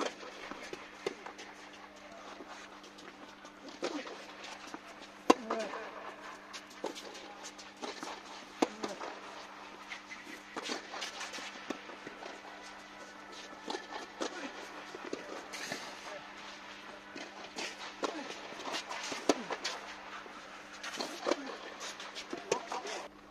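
A tennis rally on a clay court: rackets striking the ball every second or two, sharp and irregular, the loudest hit about five seconds in, with ball bounces and footsteps, over a steady low hum. Voices are heard now and then.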